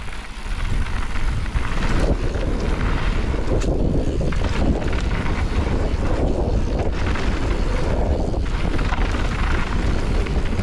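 Wind rushing over a helmet or handlebar camera microphone with mountain bike tyres rolling over loose gravel and dirt, and the bike rattling on the rough trail surface at speed.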